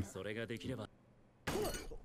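Japanese anime dialogue from the episode: a character speaks a short line, falls silent for about half a second, then a louder, more excited line breaks in about a second and a half in.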